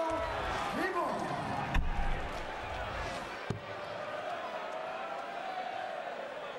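A steel-tipped dart thudding into a Unicorn bristle dartboard, one sharp single hit about three and a half seconds in, over the steady murmur of a large arena crowd. A similar sharp knock comes about a second and three-quarters in.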